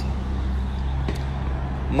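A steady, low engine hum, as of a vehicle engine running nearby, with a faint even background noise.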